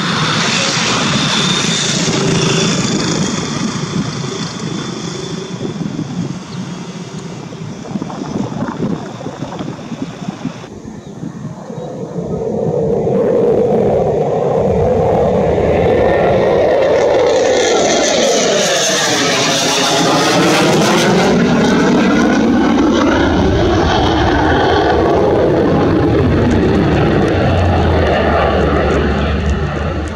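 HAL Tejas fighter's jet engine running at high power, first as a steady noise during the take-off run. About twelve seconds in, after a cut, it gets louder as the jet flies past in its display, its pitch sweeping down and back up as it passes.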